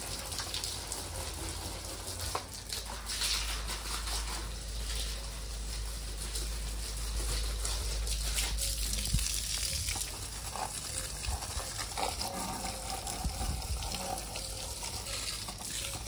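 Water spraying from a garden hose onto potted plants and paving: a steady spray and splash.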